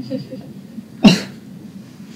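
A single sharp cough about a second in, over faint murmur of voices.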